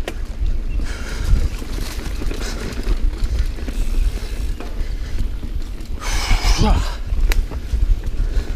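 Mountain bike being ridden fast over dirt singletrack: a steady low rumble of tyres and wind buffeting the camera's microphone, with a louder hissing rush about six seconds in and a sharp click from the bike just after seven seconds.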